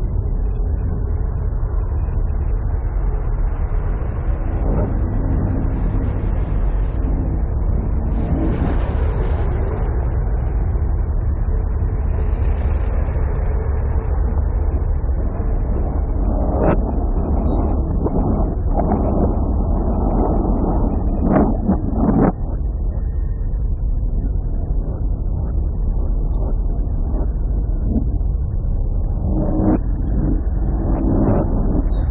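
Harsh-noise / dark-ambient track playing: a dense, steady low rumble under a haze of noise. A little past halfway comes a cluster of sharp cracks and knocks.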